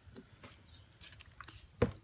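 Faint scattered handling clicks, then one sharp knock near the end.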